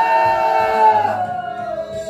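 A man's voice crying out in prayer as a long, drawn-out sung tone. It is held for about a second, then slides down and breaks off, over steady background music.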